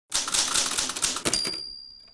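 Typewriter sound effect: a rapid run of key clacks for about a second, then a harder strike and a high ringing ding that slowly fades.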